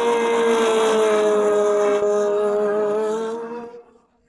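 Motorcycle engine held at high revs, a steady high-pitched drone that sags slightly in pitch and fades out shortly before the end.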